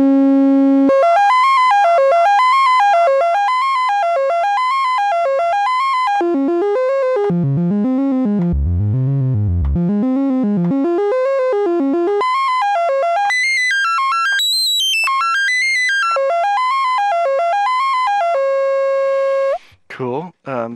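GSE XaVCF Eurorack filter, an OB-Xa filter clone, self-oscillating at full resonance as a pitched oscillator whose pitch tracks a step sequence over volts per octave. A quick repeating run of notes sweeps up and down and is transposed low around the middle and high later on. It ends on a held note that cuts off just before the end.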